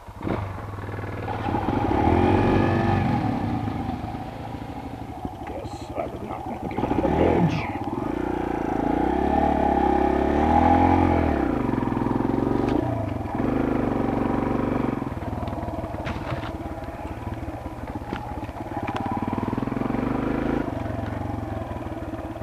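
Dirt bike engine under way on a trail, its revs rising and falling again and again as the rider works the throttle, heard from the rider's own helmet camera.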